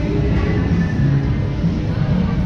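Music with a strong bass line plays steadily throughout.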